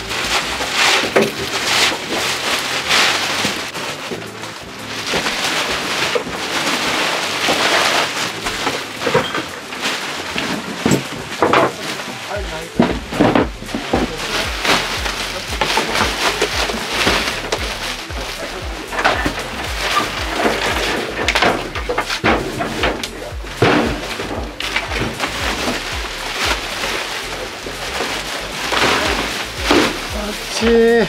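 Plastic garbage bags rustling and crinkling over and over as items are pushed into them, with scattered knocks and clatters of objects being handled.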